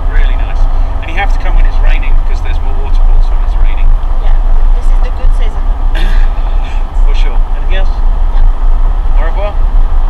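Car cabin road noise while driving: a steady low rumble of the tyres and engine, with scattered knocks and rattles.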